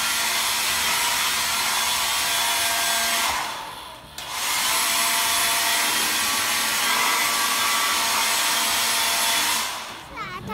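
Wall-mounted handheld hair dryer blowing steadily. It dips briefly about three and a half seconds in, picks up again, and fades out near the end.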